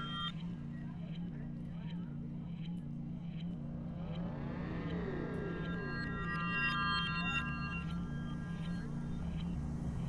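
Electronic sound-design score: a low hum pulsing at an even rhythm, with a sweeping, wavering tone about midway and a cluster of high ringing tones shortly after.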